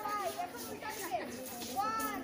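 Several girls' high-pitched voices calling out and chattering over one another, without clear words.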